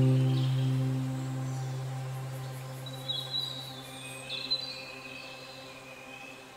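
Background music: a held low chord fades away over the first two seconds, then high bird-like chirps come in about halfway through while the music stays faint.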